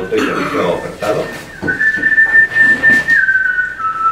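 Talking at first, then from about a second and a half in a single steady high whistling tone that steps down in pitch twice, each note held for about a second.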